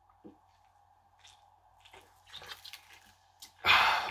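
A man drinking from a plastic soft-drink bottle, with a few faint swallows, then a loud breathy exhale near the end as he stops drinking.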